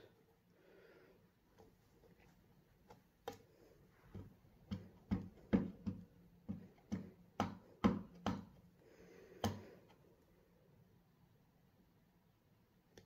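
A clear acrylic stamp block tapping again and again on a stamp ink pad while the stamp is re-inked: a run of light clicking taps, roughly two a second, from about three seconds in until about nine and a half seconds.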